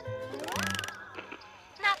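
Cartoon sound effect of the Magic Conch Shell's pull string, a rapid clicking whir lasting about half a second, under background music. The conch's voice starts near the end.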